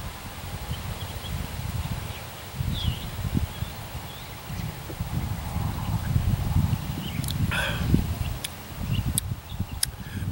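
Wind buffeting the microphone in uneven gusts, with a faint chirp about three seconds in and a few sharp clicks near the end.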